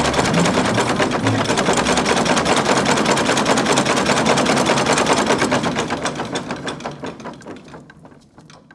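A machine running with a rapid, even clatter of about ten strokes a second, fading out over the last two seconds.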